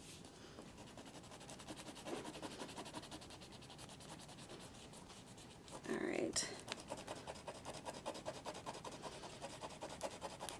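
Pen tip scratching over tracing paper in quick short strokes as drawings are traced over for transfer, faint, with a brief louder noise about six seconds in.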